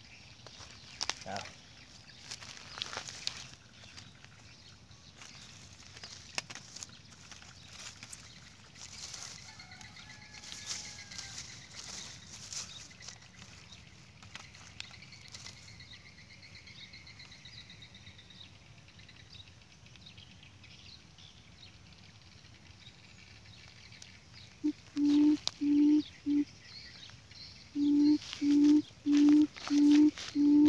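Hands rustling in dry grass and leaves, with faint birdsong behind, then near the end two runs of loud, low, evenly spaced hoots, about two a second: a quail's call at the trap.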